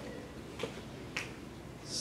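Quiet room tone picked up by a podium microphone during a pause in speech, with two faint, short clicks about half a second apart, then a short breath just before the end.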